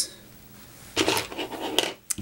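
Hands handling fly-tying material and tools on the bench: about a second of scratching and rubbing with small clicks, starting near the middle.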